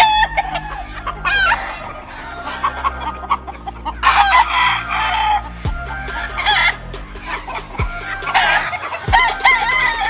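Gamecocks crowing again and again, several birds answering one another with overlapping crows, mixed with some clucking.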